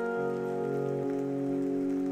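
A rain sound effect, a steady patter of rain, under soft background music of long held chords that change twice.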